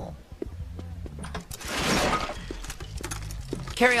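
A noisy sound effect that swells and fades over about a second, roughly two seconds in, with a few faint clicks and a low steady hum underneath.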